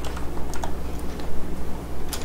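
Computer keyboard being typed on: a handful of separate keystroke clicks at irregular intervals, over a steady low hum.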